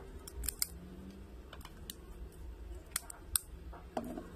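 Scattered small plastic clicks and ticks as a smartphone's opened frame and parts are handled and pressed between the fingers, with one sharper click a little over three seconds in.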